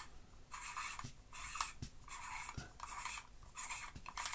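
Fine, reverse-cut aluminium threads of a 1Zpresso JX hand grinder being unscrewed by hand, giving a string of faint, short scraping strokes with a few small ticks as the metal parts turn against each other.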